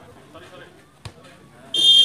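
A referee's whistle blown once near the end, a short, shrill, steady blast. About halfway through there is a single soft knock.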